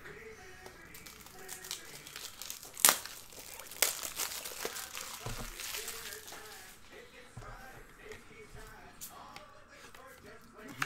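Plastic crinkling and rustling as a trading card is handled and slid into a penny sleeve and a rigid top-loader. There is a sharp click about three seconds in, the loudest moment, and a smaller one a second later.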